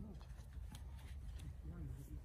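Faint, quiet voices talking, with a few light clicks and rustles over a low steady rumble.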